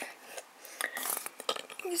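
A trading card in a rigid clear plastic holder sliding against another hard plastic holder, a faint scrape with a few small plastic clicks.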